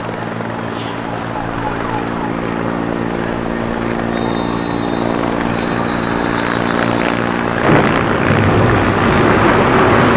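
A helicopter overhead, its rotor giving a steady drone that slowly grows louder. The drone stops abruptly about three-quarters of the way in, and a louder, rough rushing noise takes over.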